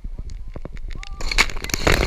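A person jumping from a cliff plunges into the water close to a camera at the surface. A loud splash starts a little over a second in, with water spraying over the camera. Before it, light clicking of water against the camera.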